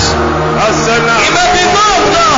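A man's voice over music with held, sustained chords. The voice is loud and its pitch sweeps up and down.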